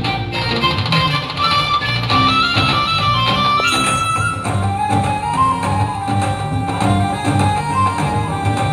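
Loud dance music through a PA system, a melody line stepping up and down over a steady beat.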